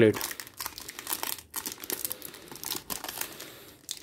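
A chocolate bar's plastic wrapper crinkling and crackling irregularly as it is torn open by hand.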